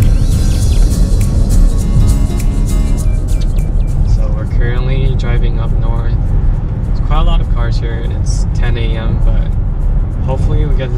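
Steady low road rumble inside a moving Mercedes-Benz SUV, under music; a voice comes in about four seconds in.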